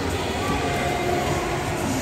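Steady, echoing din of an indoor swimming pool: water splashing and lapping around swimmers, with faint voices in the hall.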